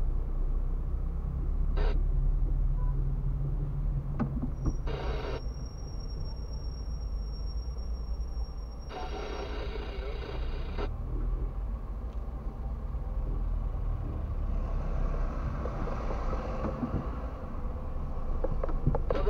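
Car running at low speed, heard from inside the cabin: a steady low engine and tyre rumble. Two short louder noises come through, one about five seconds in and a longer one of about two seconds near nine seconds.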